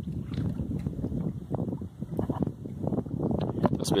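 Wind rumbling on the microphone, with small waves lapping against the edge of a granite rock slab at the water's edge.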